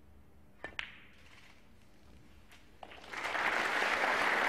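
Snooker cue tip striking the cue ball, then the cue ball clicking into the object ball, two sharp clicks close together under a second in. Two fainter knocks follow near the three-second mark, then audience applause builds for the pot.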